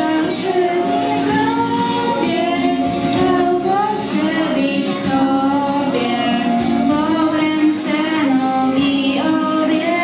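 Children singing a song together, in girls' high voices, the melody held and sliding from note to note without a break.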